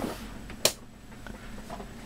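A single sharp click, a little over half a second in, as the multimeter clock's circuit is switched on.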